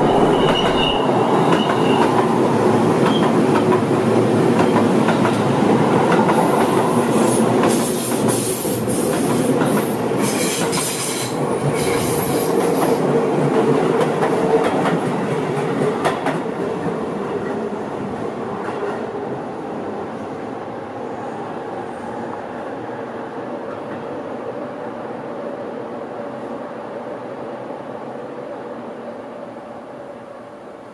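Seibu Ikebukuro Line electric train running past at speed, with rumble and rail-joint clatter and high wheel squeals about six to thirteen seconds in. The running sound then fades steadily as the train draws away.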